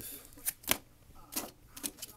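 Hard plastic trading-card holders clicking and tapping against each other and the fingers as one cased card is put down and the next picked up: a few light, sharp clicks, the sharpest a little under a second in.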